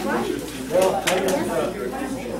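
Indistinct background talk of people in a room, with a couple of sharp light clicks about a second in.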